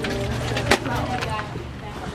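Indistinct voices over a steady low hum, with one sharp click under a second in.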